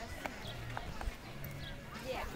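Faint open-air ambience at a softball field: distant voices over a low rumble, with three short, light clicks in the first second.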